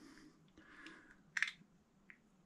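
Small handling noises from the drive end of a snowblower electric starter being turned over in the hands: a faint rustle, then one short sharp click a little past halfway.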